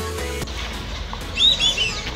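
A bird calling in a quick run of four or five sharp, loud calls about one and a half seconds in. Music cuts off in the first half second.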